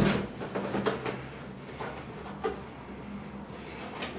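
Plastic jerrycans being handled on a wooden table: a sharp knock at the start, then a few lighter knocks and rattles.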